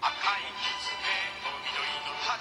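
Short sung jingle with music from a Japanese TV commercial's closing logo, cutting in suddenly.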